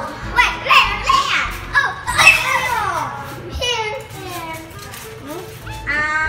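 Children talking and exclaiming excitedly over background music, the voices dying down over the last couple of seconds.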